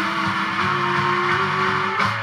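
Punk band playing live: distorted electric guitars and drums, with one long held note that slides slightly upward in pitch.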